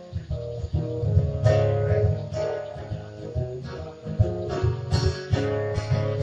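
Acoustic guitars strumming and picking an instrumental break between verses of a song.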